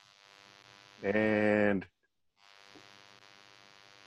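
Faint, steady electrical mains hum on the audio line, cutting out completely for a moment near the middle. A single drawn-out spoken 'And' is heard about a second in.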